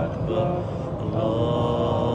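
A man's voice chanting Arabic religious recitation in long, held, melodic notes, with a short pause about half a second in before the next phrase begins.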